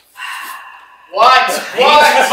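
A man's voice: a brief high-pitched sound, then from about a second in a loud, drawn-out wordless cry.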